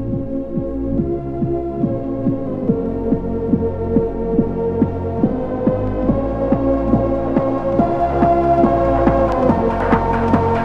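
Electronic dance music from a trance DJ mix: a steady kick drum beating about twice a second under held synth chords. Brighter high percussion comes in near the end as the track builds.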